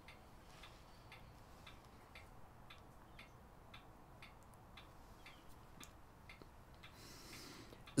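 Faint, regular ticking, about two ticks a second, over low room hiss.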